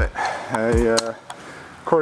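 A person's voice: one short untranscribed utterance about half a second in, with low background around it.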